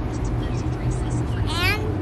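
Car engine idling with a steady low hum, and a woman's voice saying a single word near the end.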